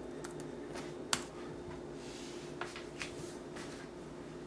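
A few scattered key clicks on a laptop keyboard as a login password is typed, the loudest about a second in, over a faint steady hum.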